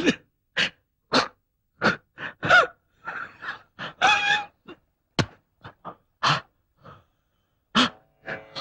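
A person gasping and straining: a string of short, breathy vocal bursts, roughly two a second, with silent gaps between them, a few of them briefly voiced.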